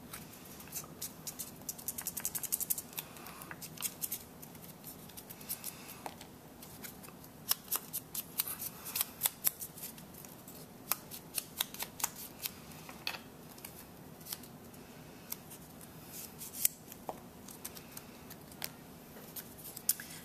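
A paper leaf cut-out being crinkled by hand and dabbed with a small ink pad: scattered sharp crackles and taps, in a dense run about two seconds in and again around eight to ten seconds in.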